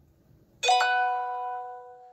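Email notification chime: a two-note electronic ding about two-thirds of a second in, ringing out over about a second and a half.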